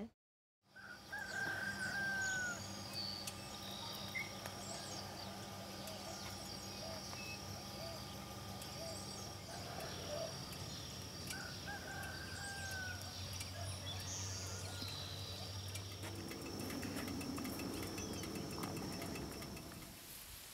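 Faint rural outdoor ambience: a rooster crows twice in the distance, with scattered bird chirps over a steady high tone and a low hum.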